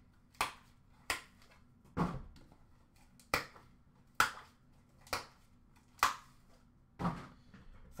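Eight sharp clicks and snaps, roughly one a second, from trading cards and their packaging being handled at a tabletop.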